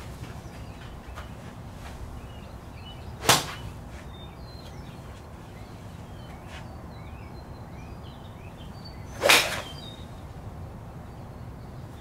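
Two golf swings with a long iron, about six seconds apart: the first a club swishing through the air, the second the full swing striking a ball off a range mat, a fairly solid strike. Faint birdsong chirps in the background between them.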